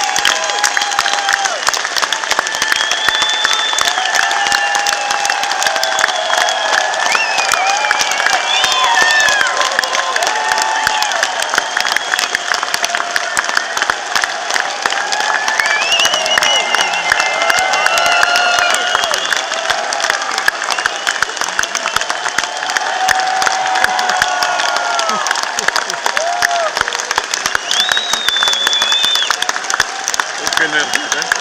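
Concert audience applauding and cheering: dense, continuous clapping with voices calling out over it, rising and falling.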